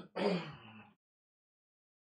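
A man clearing his throat once, briefly, near the start.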